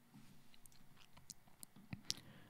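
Near silence: room tone with a few faint, scattered clicks of a computer mouse, a slightly stronger one near the end.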